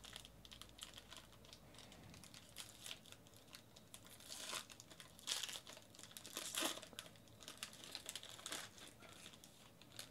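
Foil wrapper of a trading-card pack crinkling as it is opened by hand, with a run of small crackles and louder crinkling bursts in the middle.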